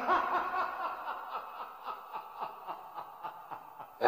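A woman laughing: a run of short, evenly spaced laugh pulses, about four a second, that slowly fade away.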